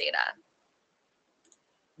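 The end of a spoken question, then near silence broken by one faint, short click about a second and a half in.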